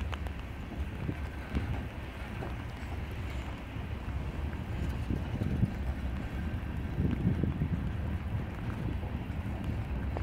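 Freight cars (tank cars, covered hoppers and gondolas) rolling past at low speed: a steady low rumble of steel wheels on rail, with scattered clicks and clunks from the wheels.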